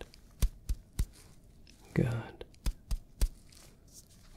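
Light taps of gloved fingers, percussion on a cheek through a palm laid over it: three quick taps, then after a pause three more. A single soft word comes between the two sets.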